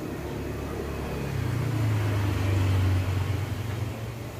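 A low mechanical hum over a steady noise, swelling about a second and a half in and easing off near the end.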